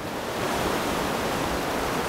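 Rushing white water of a man-made river standing wave built for surfing, a steady even rush.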